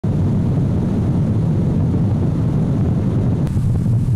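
A small boat running at speed: a steady, loud low rumble of the outboard motor and the hull on the water, mixed with wind on the microphone.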